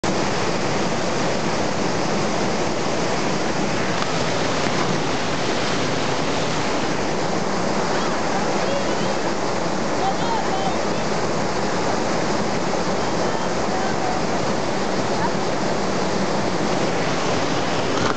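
Steady rush of flowing river water, with faint distant voices calling now and then.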